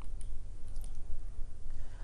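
Steady low hum with a few faint, short clicks near the start and again just before a second in.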